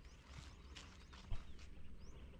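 Quiet outdoor ambience: wind rumbling on the microphone, with a few faint knocks, the clearest about a second and a half in.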